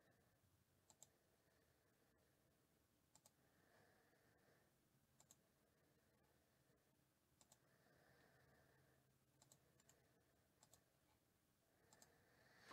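Near silence: room tone with faint, short clicks, mostly in pairs, coming every two seconds or so.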